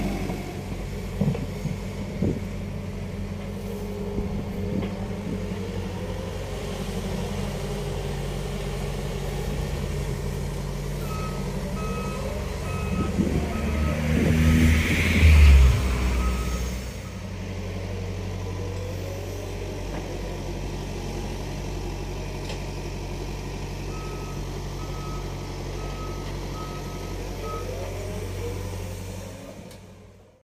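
Diesel engines of a Liebherr wheeled excavator and a Mecalac backhoe loader running steadily while digging, with a reversing alarm beeping in two spells. About halfway through an engine revs up under load, the loudest moment, and a couple of knocks come near the start. The sound fades out at the end.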